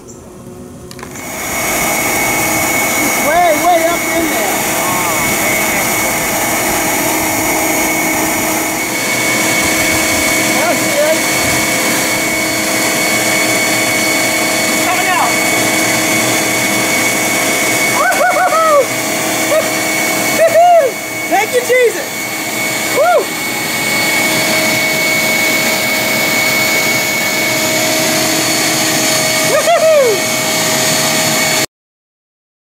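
Bee vacuum motor running steadily with a constant whine, coming on about a second in. Short rising-and-falling voice-like calls come and go over it.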